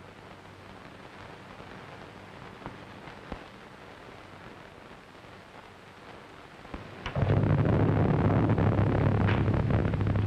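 Faint soundtrack hiss with two small clicks, then about seven seconds in a sudden crack of thunder that carries on as a loud, sustained rumble, with a second crack near the end.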